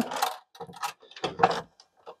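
A screwdriver and a bare copper ground wire working at the metal ground bar of a breaker panel: a few short, sparse clicks and scrapes as the screw is turned and the wire is fed under it.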